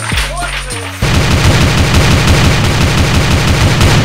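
Burst of rapid automatic gunfire starting about a second in and lasting about three seconds, fast shots run together over the song's bass line.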